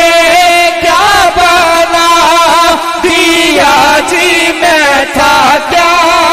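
A man singing Punjabi devotional verse into a microphone without accompaniment, holding long notes with turns and wavers in pitch and taking brief breaths between phrases.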